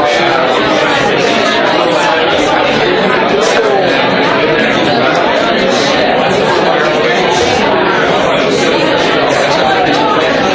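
Steady chatter of many people talking at once in a large room, overlapping conversations with no single voice standing out.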